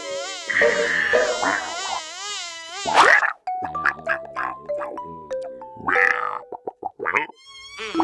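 Cartoon sound effect of a buzzing insect, a wavering whine for the first three seconds, cut by a sudden loud burst. After it comes a short run of falling musical notes, with a few brief sound-effect bursts near the end.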